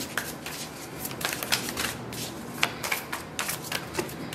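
A deck of oracle cards shuffled by hand: an irregular run of quick card clicks and flicks.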